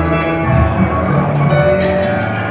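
Live band music carried by piano played on a Yamaha stage keyboard, with sustained bass notes beneath: a piano interlude linking one song to the next.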